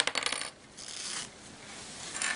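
Small clips dropping and clattering onto a hard floor: a quick run of clinks in the first half-second, then a brief rustle of tulle netting being handled.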